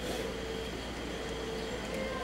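Steady background noise with a low hum and a faint steady tone; a mid-pitched hum is clear at first and fades out within the first second.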